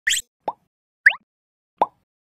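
Four short synthetic pop sound effects from an animated logo intro. Each is a brief blip sliding quickly upward in pitch, alternating high and low, spaced about half a second apart.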